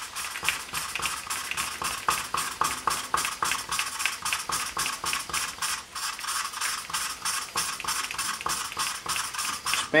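A valve being hand-lapped on its 45-degree seat in a cylinder head, spun back and forth with a lapping stick rolled between the palms. Lapping compound grinds between valve face and seat in a fast, even run of gritty scraping strokes, several a second. The lapping marks the seat contact so its roundness can be checked after the valve job.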